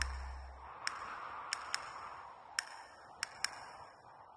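Closing of a promotional film's soundtrack: a deep bass drone fades out within the first second, leaving a faint hiss with about half a dozen scattered, sharp high pinging ticks, all dying away near the end.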